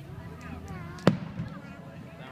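Aerial firework shell bursting: one sharp bang about a second in, echoing briefly, over people's chatter.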